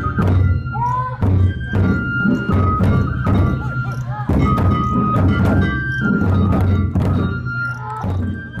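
Large barrel taiko drums on a festival float, beaten with wooden sticks in a steady driving rhythm of about two heavy beats a second. A high melody line carries on above the drumming.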